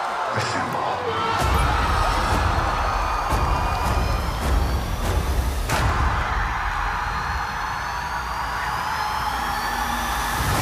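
Movie-trailer soundtrack with music and sound effects mixed together. A low rumble comes in about a second and a half in, and several sharp hits land, the strongest about six seconds in. Thin rising whistles run through the second half.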